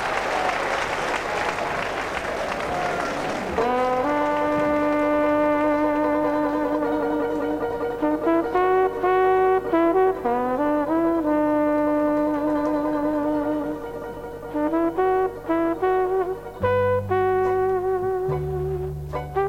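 Applause dies away over the first few seconds. A jazz band's brass section then comes in with slow, sustained held chords, and bass notes join near the end.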